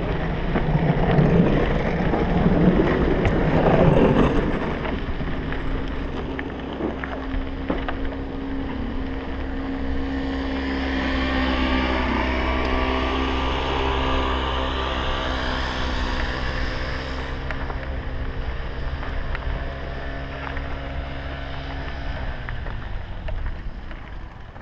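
Mountain bike rolling down a gravel track, heard from a helmet camera: a rough rush of wind and tyre noise for the first few seconds, then a steady multi-toned hum that drops in pitch and stops as the bike slows to a halt near the end.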